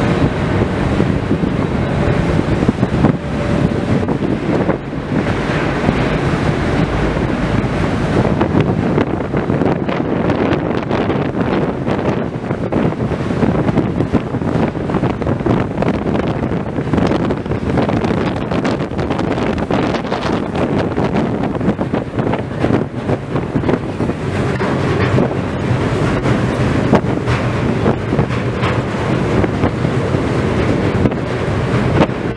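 Wind buffeting the microphone over the steady rumble of a ferry under way, heard on its open car deck; the noise is loud and continuous throughout.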